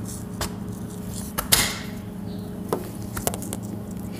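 Scattered light clicks and knocks of hands handling things at a window, the sharpest about one and a half seconds in, over a steady low hum.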